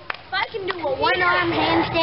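Several children's high-pitched voices calling out and chattering over one another, getting louder after the first half second. A few sharp clicks come at the start.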